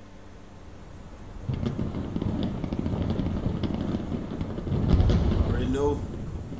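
Low rumble with scattered sharp crackles, like fireworks bursting, building from about a second and a half in and loudest near five seconds; a voice rises over it just before the end.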